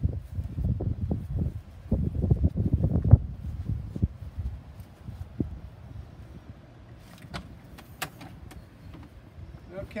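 Low wind and handling rumble on the microphone for the first few seconds, then quieter. Near the end come a few sharp metallic clicks from working the latch of an RV basement compartment door.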